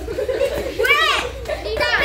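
A group of boys shouting and yelling as they play, several voices overlapping, with high shrill yells about a second in and again near the end.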